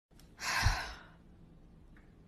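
A single short, breathy sigh about half a second in, lasting about half a second, with a soft low bump in the middle of it.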